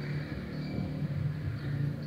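Steady low background hum, with faint scratching of a pen writing on paper.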